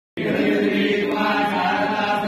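Male voices chanting Hindu mantras together in a steady, sustained drone. It starts abruptly just after the beginning.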